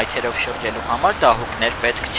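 Speech: a person talking, with a low steady background rumble.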